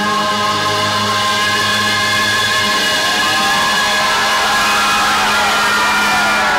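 Live band music at a rock concert: a long held chord with voices singing over it, and no drumbeat.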